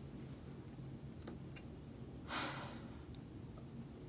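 A woman's breathy exhale, a word half-whispered on the breath about two seconds in, over quiet room tone with a few faint clicks.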